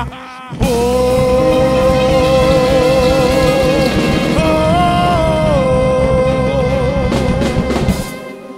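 Live band ending a song: a couple of stop hits, then one long held note over busy drumming and cymbals. The note steps up briefly in the middle and back down, and a final flurry of drum hits near the end lets the sound ring away.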